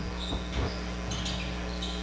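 Gym ambience during a basketball game: a few faint, short sneaker squeaks on the court over a steady low hum.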